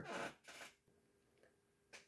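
Near silence: room tone with a faint steady hum, and a brief faint sound right at the start.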